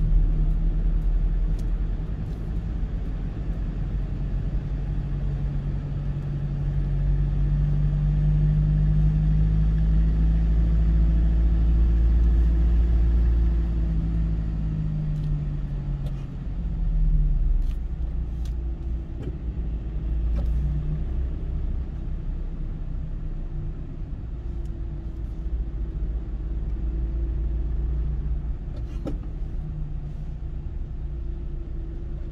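Steady road and engine rumble of a car cruising on an expressway, heard from inside the car, with a low engine hum that drifts up and down in pitch. It grows a little louder for several seconds in the first half, with a brief swell about a third of the way through.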